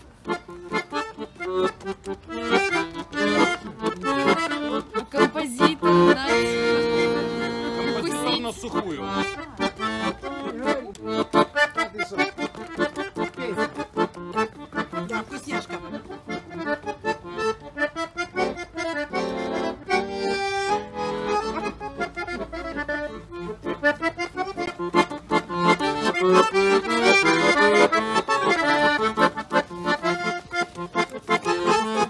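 Piano accordion playing a lively instrumental tune, fast runs of notes broken by a couple of held chords.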